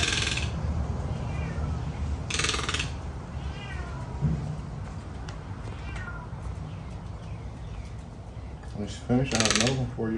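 A domestic cat meowing several times with short falling calls. Two brief buzzing bursts come about two and a half seconds in and again near the end.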